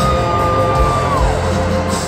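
Live country-rock band playing in an arena with acoustic and electric guitars and drums. One high note is held for about a second and then slides down.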